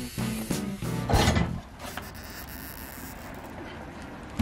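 Background music, with a loud burst of grinding about a second in from an angle grinder cutting through a welded iron gate frame, then quieter rasping work noise.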